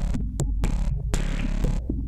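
Minimal electro track: a deep, steady synth bass throbbing underneath, with a burst of hissy noise swelling in about once a second and short clicks between.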